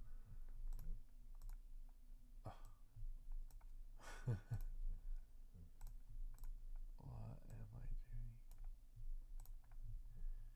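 Computer mouse clicks: a dozen or so single sharp clicks, irregularly spaced, as text is selected and colours are picked from a menu. A man's low wordless voice sounds briefly twice, about four and seven seconds in.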